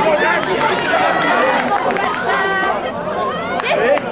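Many voices shouting and calling over one another: rugby spectators and players during open play.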